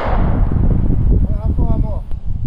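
The echo of a rifle shot fired just before dies away over the first half second, leaving a low rumble. A few words are spoken briefly near the end.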